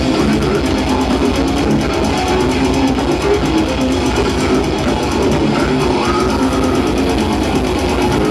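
Death metal band playing live: distorted electric guitar and bass over very fast, even drumming, loud and unbroken.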